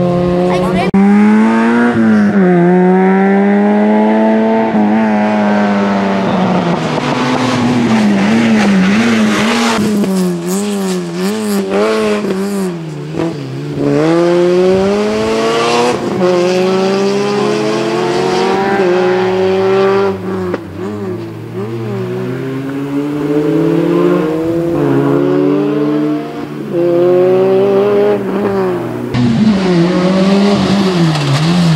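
Peugeot 106 group N 1600 class car's four-cylinder engine revving hard, its pitch rising and falling over and over with quick lifts and gear changes as it is driven through a slalom.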